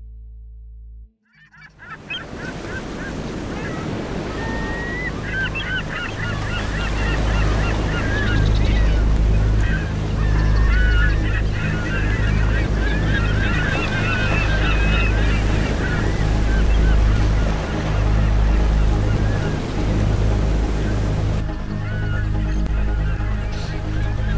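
Ocean surf breaking on a rocky shore with a heavy low rumble, fading in about a second in, with birds calling over it in a busy run of short squawks through the middle. The sound thins out near the end.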